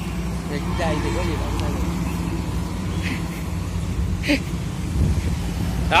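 An engine idling steadily with a low, even hum. Faint voices talk in the background.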